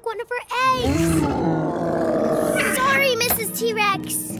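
A cartoon dinosaur roar lasting about two and a half seconds, starting about half a second in, with short high character vocal sounds before and after it.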